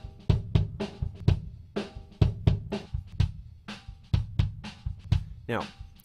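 Kick drum track recorded with an AKG D112 mic inside the drum, played back raw with no EQ: a beat of repeated kick hits, several a second. The sound is left with its mid-range boxiness and ringing overtones uncut.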